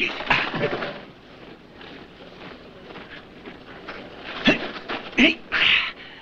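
Short bursts of men's voices, grunts and wordless exclamations from a hand-to-hand sparring bout, clustered near the start and again near the end, with quieter background between.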